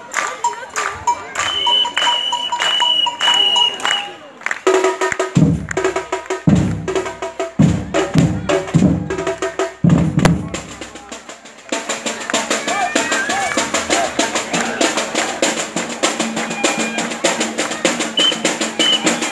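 Carnival batucada percussion group drumming. A high repeated tone sounds over the beat in the first few seconds, a run of deep drum strokes follows from about five to eleven seconds in, and then a fast, dense beat.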